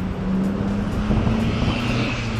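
A steady low engine drone, rising slightly in pitch, over the noise of heavy road traffic below.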